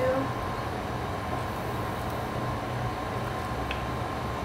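Steady background hum and hiss of the room with a faint, steady high tone and no distinct sound event.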